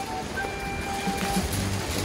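Background music with light melodic notes, low bass notes joining about a second in, over the rattling rolling noise of a metal shopping cart being pushed across pavement.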